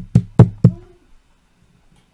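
Quick knocks on a hard surface, about four a second, dying away within the first second.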